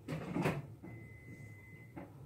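A single knock about half a second in, then a steady high-pitched tone lasting about a second, over low room murmur.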